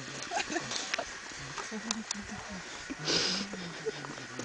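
A low man's voice making short wordless vocal sounds, in brief stretches, with a short rush of noise about three seconds in.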